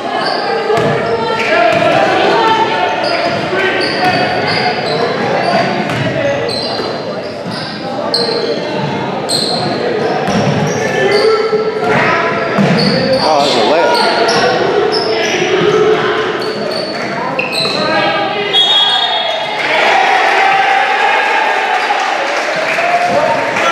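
A basketball game in a gym: a ball bouncing on the hardwood floor, sneakers squeaking, and players and spectators calling out, all echoing in the large hall.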